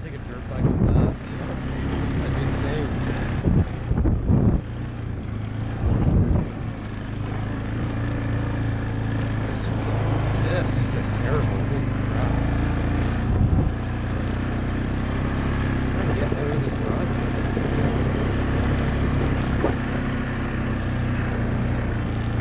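Yamaha ATV engine running under way on a trail ride, with a few louder bursts in the first six seconds, then holding a steady speed.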